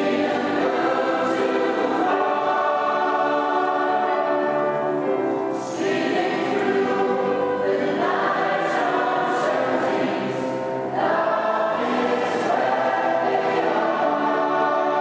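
Mixed choir of women's and men's voices singing in sustained chords, with new phrases starting about six, eight and eleven seconds in.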